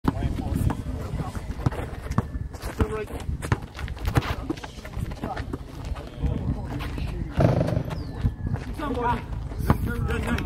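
Basketball bounced on a concrete court, sharp thuds at irregular intervals, with players' voices calling out indistinctly.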